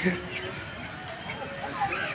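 Voices of people talking some way off, with a low thump just after the start and another smaller one near the end.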